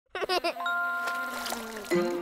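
Short cartoon intro jingle: a few quick bouncy blips, then a held bell-like chime with a low tone sliding down near the end.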